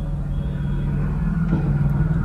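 A vehicle's engine idling, heard from inside the cabin as a low, steady rumble.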